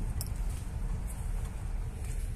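Wind buffeting a handheld phone's microphone: a steady, uneven low rumble, with a faint click shortly after the start.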